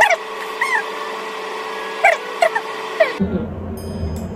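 An edited-in sound effect: short chirping calls over a steady background tone. It cuts off abruptly about three seconds in, leaving a low room hum.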